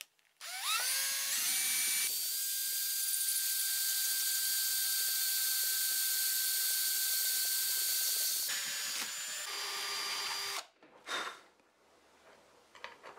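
Electric drill starting about half a second in, its whine rising as it spins up, then running steadily as a twist bit bores through an 8 mm acrylic (methacrylate) sheet. Its tone changes near the end before the motor stops, and one short burst follows.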